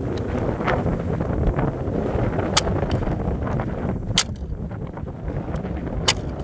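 Sharp cracks and snaps of a model Oldsmobile car breaking under a high heel, the loudest about two and a half and four seconds in. Steady wind noise on the microphone runs underneath.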